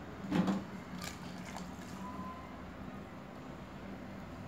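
A short clatter about half a second in, followed by a few faint clicks, over a steady low hum.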